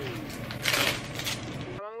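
Small pieces of jewelry and packaging clinking and rustling as they are handled on a desk while an order is packed, with sharp little clicks and a louder clatter about half a second in, over a steady low room hum. The sound cuts off abruptly near the end.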